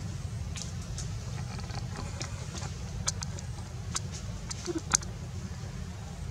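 Outdoor background noise: a steady low rumble with a few short, sharp clicks scattered through it.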